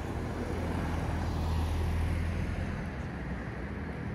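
A car passing on the street, its low engine and tyre rumble swelling to a peak about two seconds in and then easing off.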